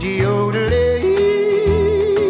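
Old country recording: a long, high yodel-style vocal note with vibrato over acoustic guitar and bass. The note steps up briefly about two thirds of a second in and drops back a third of a second later.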